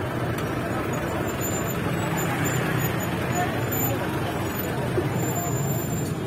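Steady noise of street traffic mixed with the chatter of a crowded open-air market.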